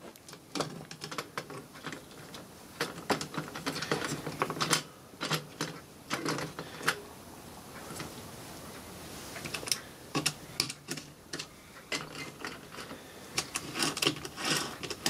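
Irregular clicks, ticks and light rattles from hands handling wires, alligator clips and the plastic and metal parts of a stripped-down inkjet printer mechanism.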